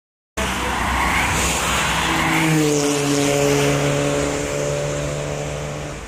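Highway traffic passing close by: tyre and wind roar, joined about two and a half seconds in by a steady engine drone, easing off toward the end. It cuts in abruptly just after the start.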